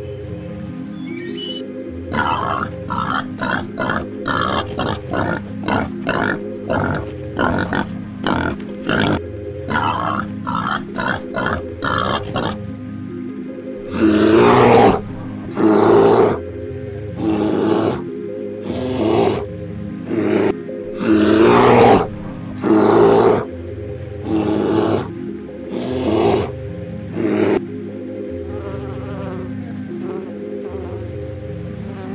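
A bear calling in a series of loud grunting roars, each about a second long and well spaced, over background music. These are preceded by a quicker run of shorter calls, two or three a second.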